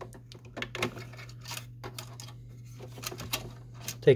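Light, irregular plastic clicks and rattles as an Epson WorkForce WF-2650 printhead is worked by hand straight up out of its carriage.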